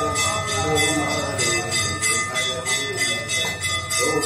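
Metal temple bells rung in a fast, continuous clanging rhythm, their ringing tones hanging steadily over the strikes.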